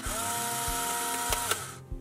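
Polaroid 636 Closeup instant camera firing: a shutter click, then its film-ejection motor whirring, spinning up and running steadily for about a second and a half before it stops with a click. The camera holds an empty film pack, so no print is pushed out.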